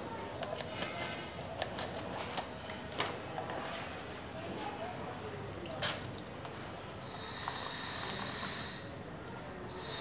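Scissors snipping open a plastic sachet, with the crinkle and crackle of the plastic pouch in a rapid run of small clicks, then a couple of sharper snaps as it is handled and squeezed. Near the end a faint, steady high whine comes in.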